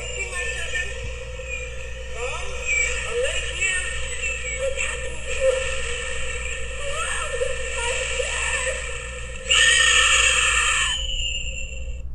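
A sound module inside a promotional conch shell, set off by pulling its tab and shaking it, plays a little scary recording through its small speaker: faint wavering voice-like sounds over a steady hiss. A louder rush of noise comes in about nine and a half seconds in and tails off near the end.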